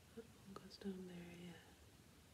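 A woman's soft, brief hum or murmur at one steady pitch, lasting under a second, just after a faint click. Otherwise a quiet room.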